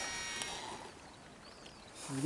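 Shimano Exsence DC baitcasting reel at the end of a cast: a faint high whine from the spool, braked by its digital control, dies away within the first half-second, with one short tick about half a second in.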